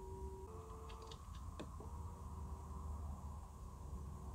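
Electric seat-adjustment motors of a Mercedes-AMG GT 4-door coupe's power seat running faintly with a steady whine. The pitch shifts as a different adjustment is selected, and the motors stop for about half a second a little after a second in, then run again. Light clicks of the door-mounted seat switches come in between.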